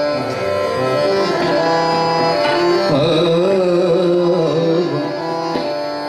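Hindustani classical vocal: a male singer holds and ornaments a wavering melodic line over a steady tanpura drone, with harmonium and tabla accompanying.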